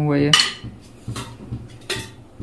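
Stainless steel kitchen utensils clinking together as they are handled at a sink: one sharp ringing clink early on, then two lighter ones.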